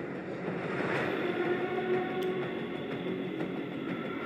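Soundtrack of a military montage playing: a steady rumbling drone with several sustained tones held underneath it.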